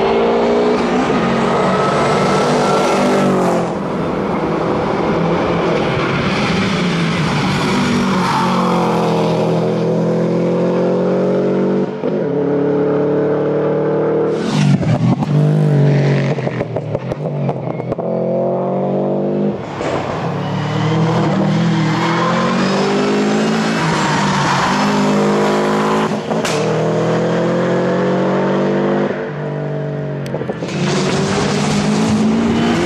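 Subaru Impreza's flat-four engine pulling hard at high revs, its pitch climbing in long rises with a short drop at each gear change about every seven or eight seconds. About halfway through comes a rougher, noisier stretch.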